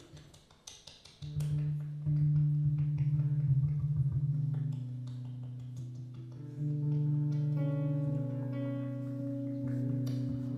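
Free jazz improvisation led by low, sustained string notes, starting quietly and coming in strongly after about a second. From about two-thirds of the way through, further held tones layer in above them.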